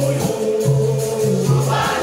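Capoeira angola roda music: a chorus singing over berimbau and pandeiro, with a steady low berimbau tone and regular percussion strokes.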